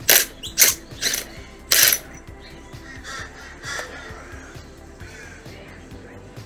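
Makita 18V cordless impact driver run in reverse to back a concrete screw out of granite: four short hammering bursts in the first two seconds, the last the longest, then quieter as the screw comes free.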